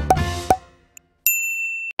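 The end of an intro music sting: two sharp, ringing strikes that fade away. After a brief gap comes a steady high electronic beep, under a second long, that cuts off suddenly.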